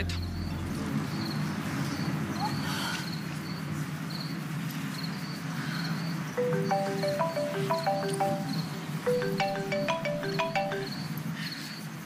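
Crickets chirping steadily, about two chirps a second, over a low night-time hum. About six seconds in, a mobile phone's melodic ringtone plays the same short tune twice, and then the call is answered.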